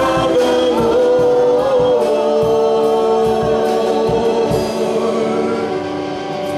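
Live gospel worship song: a band with guitars playing under sustained singing, with a steady beat.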